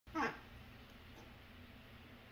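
African grey parrot giving one short call, about a quarter of a second long and falling in pitch, right at the start, then only faint room tone.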